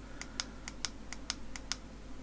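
Small plastic button clicks from a cheap LED selfie ring light's control, pressed in quick succession about six times a second. The light's brightness is being stepped down from maximum.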